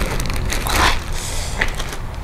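Clear plastic carrier bag crinkling in a short burst about a second in, with a brief crackle of plastic a little later as it is handled.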